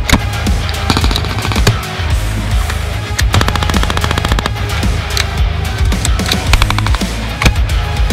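Light machine gun firing several bursts of automatic fire, about a dozen shots a second, over background music with a steady beat.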